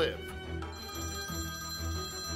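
Telephone ringing: a steady high ring that starts just under a second in, over background music.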